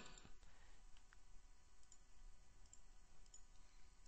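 Near silence: room tone with a few faint clicks of a computer mouse scattered through.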